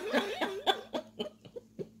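A woman laughing into her hand: a wavering, stifled laugh, then a string of short chuckles that fade away.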